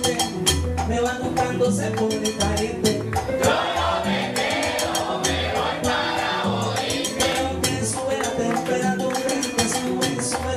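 Live salsa band playing at full volume: keyboard piano, timbales and a saxophone-and-trombone horn section over a steady dance rhythm, with singing.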